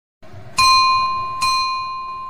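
A notification-bell sound effect struck twice, under a second apart, each strike ringing on with a clear high tone.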